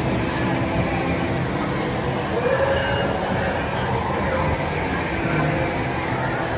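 Steady low rumble and hiss of the ride's show soundscape in a dark scene, with faint held tones and no distinct events.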